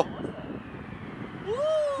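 Quiet outdoor background noise. Near the end a man's voice starts a rising 'woohoo' cheer.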